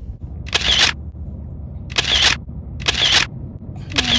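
Small finger-pump spray bottle sprayed four times, each a short hiss of mist starting with a sharp click, about a second apart.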